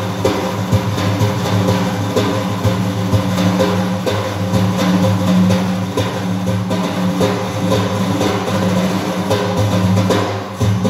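Sufi music: daf frame drums struck in a dense, steady rhythm over a sustained low drone.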